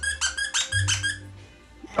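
Squeaky plush Santa dog toy squeezed by hand: a quick run of about seven short, high squeaks in the first second and a half, then fading. Background music with a low bass plays underneath.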